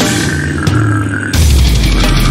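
Brutal slamming death metal with heavily distorted, downtuned guitars. About a second and a half in, the full band comes back in with a heavy low-end hit and fast drumming.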